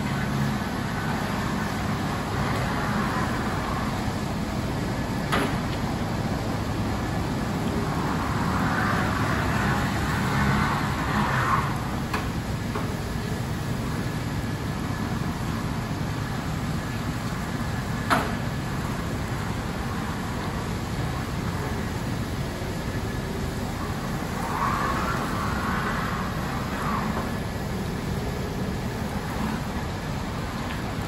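Battery-electric Haulotte Star 20 vertical mast lift driving at its fast drive speed: a steady motor hum with small wheels rolling on concrete. A few sharp knocks and a couple of swells of scuffing noise come through along the way.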